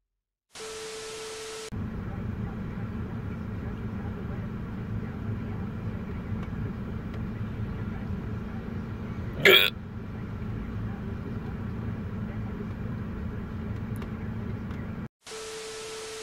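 A short burst of TV static with a steady tone, then a low steady hum broken by one short voice sound about nine and a half seconds in, then a second burst of static with the same tone near the end.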